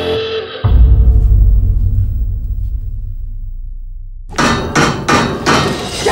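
Trailer sound design: a held tone is cut off by a sudden deep boom that slowly fades into a low rumble. Near the end a quick run of sharp, hammer-like bangs follows.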